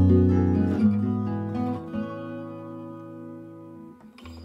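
Acoustic guitar playing plucked notes and chords that ring on and fade, growing steadily quieter through the second half.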